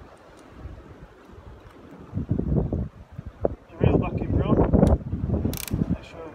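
Fishing reel being handled and wound on a rod in a rod rest, a mechanical ratcheting sound in bursts starting about two seconds in and loudest about four to five seconds in.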